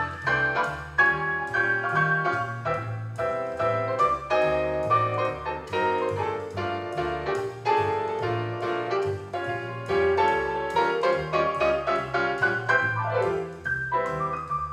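Grand piano played solo: a continuous run of notes and chords over a bass line that changes every fraction of a second.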